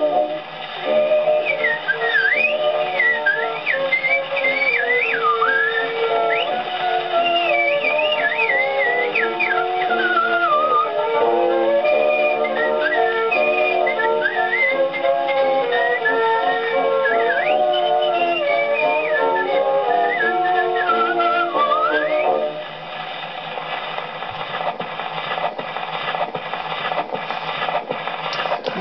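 Horn gramophone playing an early record: a man whistles the tune in quick, swooping runs over instrumental accompaniment, with the thin, narrow sound of an old acoustic recording. The music stops a few seconds before the end, leaving quieter record noise with a few faint clicks.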